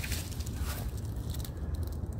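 Low steady rumble with light crackling, microphone noise from a phone held by hand while filming close up.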